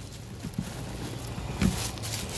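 Faint handling noise: soft rustles and a few small knocks, with a louder knock about one and a half seconds in.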